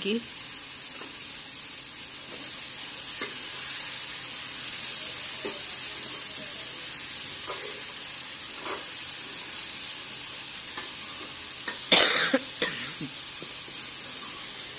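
Chopped cauliflower sizzling as it fries in a steel pan on a gas stove, with a spoon stirring and scraping the pan now and then. A couple of short, louder sounds near the end.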